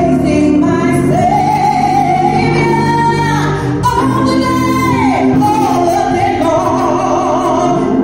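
A woman singing a gospel solo through a microphone, holding long notes with vibrato over a steady low accompaniment.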